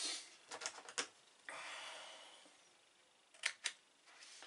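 A stiff decal sheet rustling and crackling as it is handled, with a short hiss partway through that fades out, then two sharp clicks near the end from a small pair of scissors.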